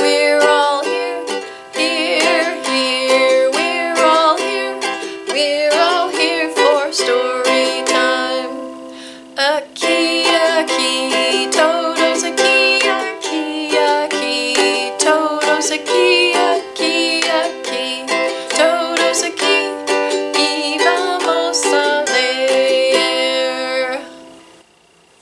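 Ukulele strummed in a steady rhythm, accompanying a woman singing a children's welcome song, with a short break about nine seconds in.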